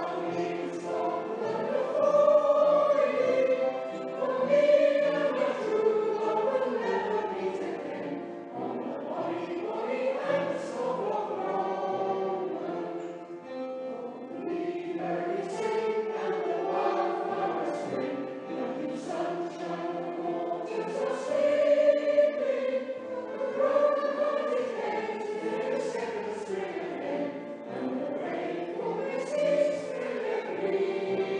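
An amateur scratch choir singing a song together in a church, the voices continuing without a break.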